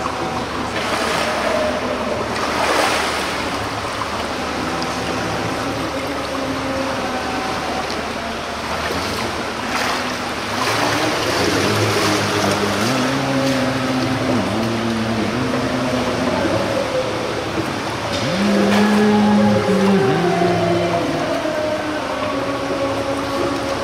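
Pool water splashing and churning as a person is plunged under and lifted back up in a full-immersion baptism, with the loudest splash about three seconds in. A steady wash of water noise follows in the echoing pool hall.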